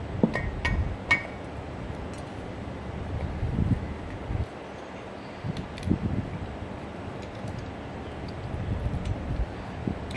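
Metal end bell of an old electric motor being handled and fitted over the rotor shaft and brush gear. There are three sharp, briefly ringing metal clinks in the first second or so, then quieter scraping, knocking and a few light taps as it is worked into place.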